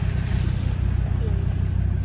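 A Land Rover Defender 4x4's engine running as it drives slowly, heard from inside the cabin as a steady low drone.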